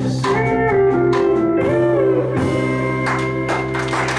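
Live band playing the closing bars of a song: acoustic guitar, electric guitar and drums, with bending lead notes, a few drum hits about three seconds in, and a final chord left ringing.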